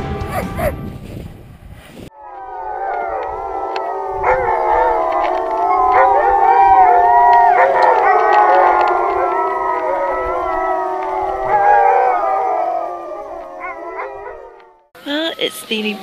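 A sled team of Alaskan Malamutes howling together in chorus: many overlapping voices rising and falling in pitch. It starts about two seconds in and stops shortly before the end.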